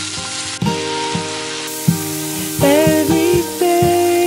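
Sliced bell peppers sizzling as they stir-fry in sesame oil in a frying pan, turned with chopsticks, under a background song with a singing voice.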